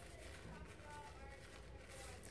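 Faint, soft rubbing of hands rolling a coil of wet clay back and forth on a cloth-covered table.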